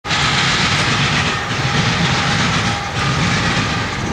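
CSX intermodal freight train rolling past: a loud, steady rumble and rush of wheels on rail that holds evenly throughout.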